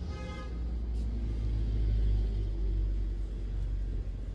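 A low rumble that swells to its loudest about two seconds in, with a brief pitched note at the very start.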